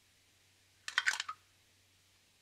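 A brief cluster of light clicks about a second in: a metal spoon tapping against a small plastic cup of salad dressing. Otherwise near silence.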